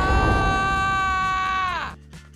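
A voice-acted scream, one long high "Aaah!" held at a steady pitch, that bends down and cuts off just before the end, over a low rumble.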